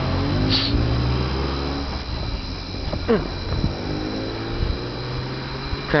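Road vehicle engine running nearby over a steady low rumble of traffic, its note rising slowly twice as it accelerates.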